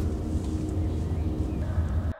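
Steady low rumble of a car heard from inside the cabin, the engine running.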